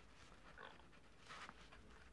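Near silence: room tone, with faint scratching of a pen writing on paper.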